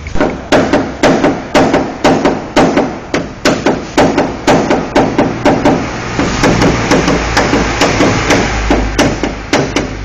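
Small hammer tapping down a dent in a car's sheet-metal roof edge in paintless dent repair: steady sharp strikes about three a second, turning to quicker, lighter taps about six seconds in.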